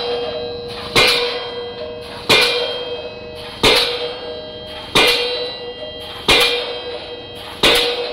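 Open-ended diesel pile hammer driving a steel pile: six sharp metallic blows, one about every 1.3 seconds, each clang ringing on between strikes.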